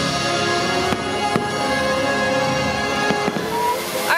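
Fireworks-show music playing with fireworks bursting, two sharp bangs standing out about a second in, half a second apart.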